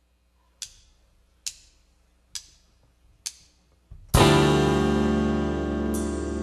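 A live band's count-in: four sharp drumstick clicks, a little under a second apart. About four seconds in, the band comes in together on a loud chord of guitar and bass that rings on and slowly fades.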